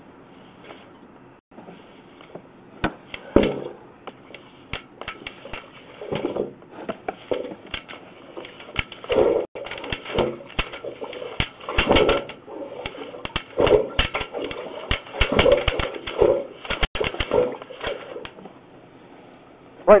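Irregular clicks, knocks and rattles as a sewer inspection camera's push cable is fed into and pulled back along a clay sewer line, the camera head running into an obstruction.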